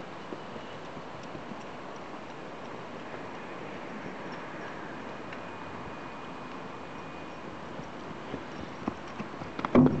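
A horse's hoofbeats on dirt, at first a few scattered thuds near the end that come closer and grow louder, then a cluster of heavy thuds as the horse takes off over a small jump.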